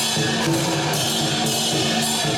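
Traditional Chinese dragon dance percussion: a large drum beating a steady rhythm with clashing cymbals and ringing gong tones.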